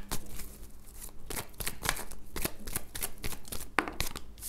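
A small deck of oracle cards being shuffled by hand: a quick, irregular run of card flicks and taps.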